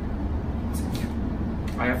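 Steady low background rumble, with a faint short rustle about a second in.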